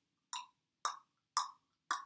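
Four sharp knocks, evenly spaced about half a second apart, imitating a knock at the door.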